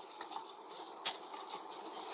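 Faint steady background hiss from a film soundtrack's ambience, with one light click about a second in.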